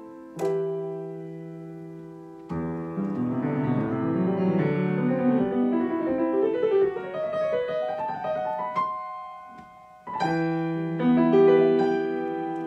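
Solo grand piano: a chord struck and left to ring and fade, then a busy passage of quick notes that climbs stepwise into the treble, a brief near-pause, and another loud chord near the end.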